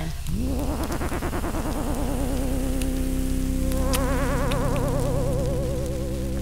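Electronic synthesizer tone gliding up in pitch and then holding with a steady warbling vibrato, a higher warbling layer joining about four seconds in, over a low steady hum.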